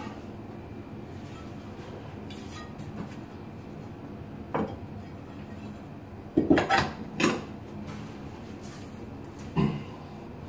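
A few short clinks and knocks of tile pieces being handled and set against each other at the shelf: one about halfway through, a quick cluster of three a couple of seconds later, and one more near the end.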